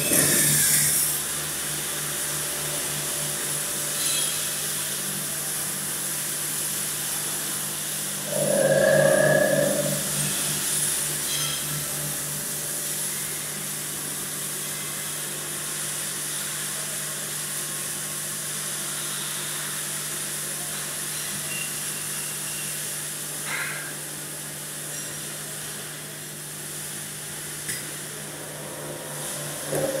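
Enclosed industrial machine running a work cycle, a steady hum and hiss with a louder whirring spell of about a second and a half around nine seconds in and again at the end.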